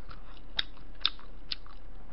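A person chewing food close to the microphone: three sharp wet mouth clicks about half a second apart, with fainter smacks between.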